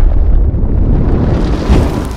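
Fiery explosion sound effect: a deep, rumbling boom that swells again near the end and then begins to die away.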